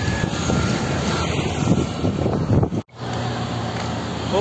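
Steady low outdoor rumble of wind and distant engine noise picked up by a smartphone's microphone, broken by a sudden brief dropout about three seconds in where one video clip cuts to the next.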